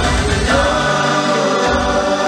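Wedding dance music: a band playing a melody with voices singing together over a pulsing bass.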